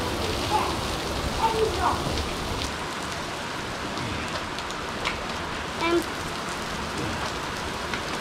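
Heavy rain pouring onto an asphalt yard, a steady hiss of drops hitting wet pavement.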